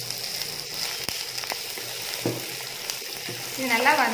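Chopped onions sizzling in hot oil in a nonstick pan, stirred with a wooden spatula that knocks and scrapes against the pan a few times.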